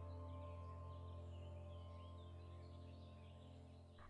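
Soft ambient background music of sustained, held notes, slowly fading away.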